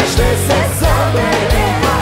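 Live pop-folk band playing, with drums keeping a steady beat under bass, guitar and keyboards, and a woman singing the lead melody.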